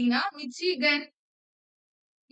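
A woman's voice speaking for about the first second, then cutting off to silence.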